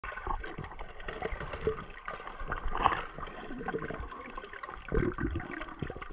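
Water gurgling and sloshing, heard underwater through the camera, with scattered small clicks and a couple of louder gurgles about three and five seconds in.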